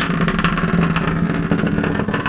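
Vibrating motor of a CalExotics Optimum Power Master Wand Vibrating Stroker running on one of its settings: a loud, steady buzz that starts suddenly, with the toy rattling against a hard tabletop.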